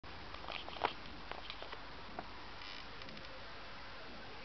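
Handling noise from a hand-held camcorder: a few light clicks and knocks in the first couple of seconds, the loudest just under a second in, over a steady low hiss, with a brief high chirp a little past the middle.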